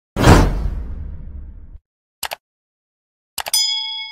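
Intro sound effects: a loud whoosh with a deep impact that fades over about a second and a half, then two quick mouse clicks, then another run of clicks followed by a bright bell ding that rings on near the end, the stock sound of a subscribe-button and notification-bell animation.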